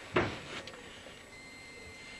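A sharp knock of something hard being handled comes just after the start, with a softer tap about half a second later. After that there is only a low background.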